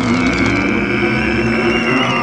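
A steady held drone in the cartoon's soundtrack: a low hum under a sustained higher tone, unchanging, a tense suspense sting.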